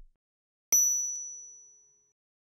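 A single bright ding: one sudden strike ringing out as a high, pure tone that fades away over about a second.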